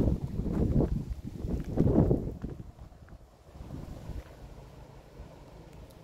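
Wind hitting the microphone in three low gusts over the first two seconds or so, then dropping to a quieter steady background.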